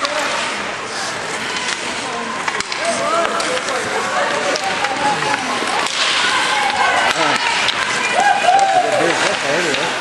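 Spectators' voices calling and shouting across an ice hockey rink, wavering up and down in pitch, over a steady hiss of skates on the ice, with a couple of sharp knocks from sticks or puck.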